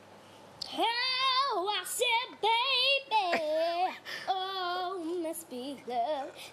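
A young girl singing unaccompanied, coming in under a second in with long held notes and vibrato.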